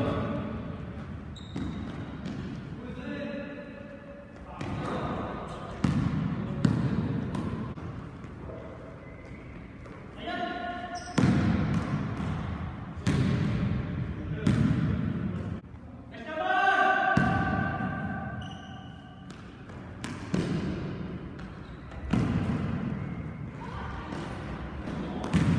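A basketball bouncing on a sports-hall floor during play, single irregular bounces a second or two apart, each one ringing in the hall's echo.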